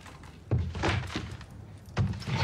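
A single dull thump about half a second in, fading quickly, with fainter brief sounds after it.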